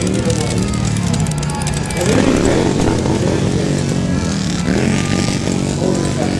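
Motorcycle engine running steadily, with indistinct voices talking over it.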